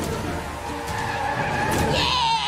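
Car engine running with tyres screeching, a car sound effect in an animated cartoon.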